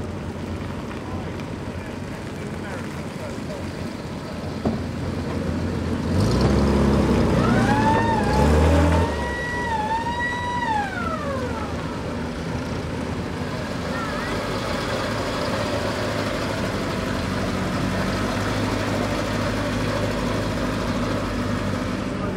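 Engines of vintage military vehicles running as they drive by, getting louder about six seconds in. From about seven seconds in a siren winds up, wavers, holds its pitch and falls away by about twelve seconds.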